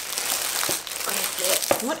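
Plastic wrapping and tissue paper crinkling and rustling as an item in a clear plastic sleeve is pulled out of a packed gift box, with a few sharp crackles.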